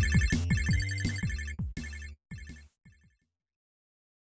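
Short electronic logo jingle, like a ringtone: repeated high chiming tones over low pulses and quick falling tones. It breaks off twice and fades out about three seconds in.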